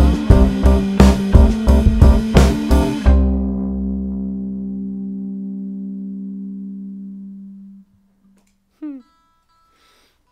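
A live band of drums, upright bass, electric guitar and keyboard plays the closing accented hits of a soul-pop song for about three seconds, then lets the final chord ring and fade out over about five seconds. A brief rising voice is heard near the end.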